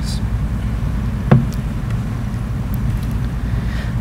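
Room noise of a lecture hall, a steady low hum, broken once by a single sharp click about a second in.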